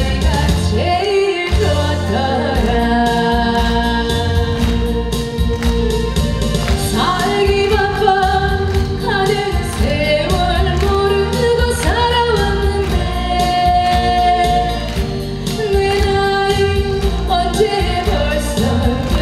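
A woman singing a Korean song live into a handheld microphone over amplified backing music with a steady beat.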